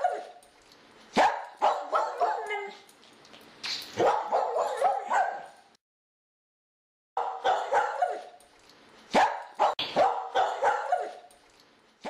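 Small dog barking and yipping in quick runs of short, sharp calls, broken by a second or so of dead silence about halfway through.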